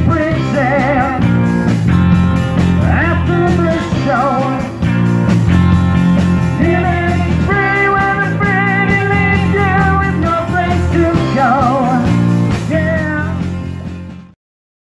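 Live rock band of drums, bass guitar and electric guitar playing, with a wavering, pitch-bending lead line over the steady bass and drums. The music drops away at the very end.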